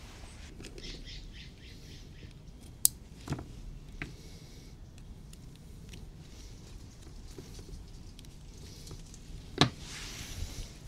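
A few short, sharp plastic clicks and cable handling as MC4 solar panel connectors are snapped together, the loudest click about three seconds in, over a faint steady hiss.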